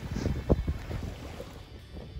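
Wind buffeting the microphone over small waves washing on the shore, with one loud gust about half a second in. The hiss of the surf thins out near the end.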